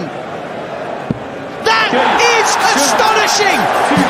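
A single steel-tip dart thuds into a bristle dartboard about a second in. It is the match-winning double 19. Loud, excited shouting breaks out from about halfway.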